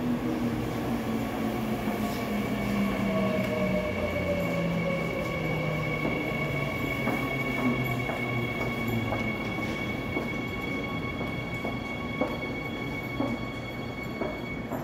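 Seoul Metro Line 3 subway train pulling into a station and braking: its motor whine falls steadily in pitch as it slows, a high steady tone sets in about four seconds in, and the wheels click over rail joints in the later seconds.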